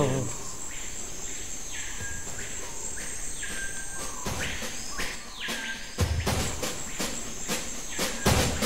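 A steady high-pitched insect trill, with a falling call repeated about once a second. Drum beats come in about halfway through, as part of a music track.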